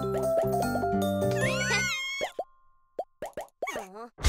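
Upbeat cartoon ensemble music with a bouncy melody over a repeating bass line, topped by a few gliding tones, stops abruptly about halfway through. A few short cartoon plops and gliding pitch-bending sound effects follow, with silent gaps between them.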